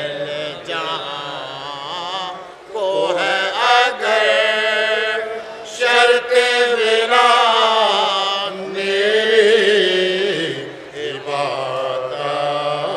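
Sozkhwani: a man chanting an Urdu elegy unaccompanied, in long melismatic phrases with held, wavering notes. There are brief breaths between phrases about two and a half, five and a half and ten and a half seconds in.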